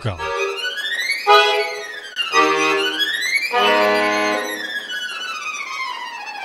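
Chromatic button accordion playing solo: fast runs sweep up and down the keyboard, and two held chords with low bass notes sound about two and a half and three and a half seconds in.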